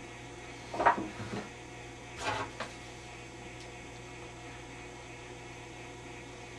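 Steady mains hum from the running Admiral 24C16 vacuum-tube television, with two brief knocks about a second in and again just after two seconds.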